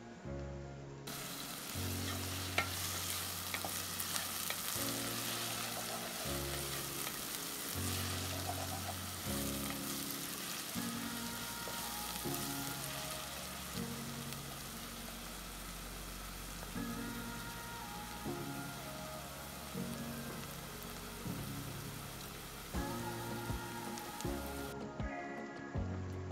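Chopped red onion sizzling as it fries in oil in a saucepan, with a wooden spoon stirring it and scraping against the pan. The sizzle comes in about a second in and drops away near the end, over soft background music.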